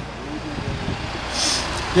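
Street traffic: a car passing close by over a steady low rumble, with a short hiss about one and a half seconds in.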